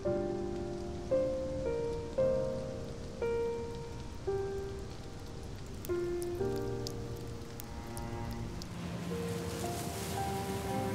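Light rain falling, with scattered sharp drop ticks in the second half, under slow background piano music whose single notes are struck about once a second and ring away.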